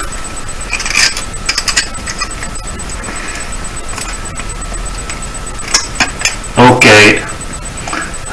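Pliers working the twisted-wire stem of a radiator-cleaning brush loose from its handle: scattered small metallic clicks and scraping as the wire is gripped, twisted and pulled. A short burst of a man's voice near the end.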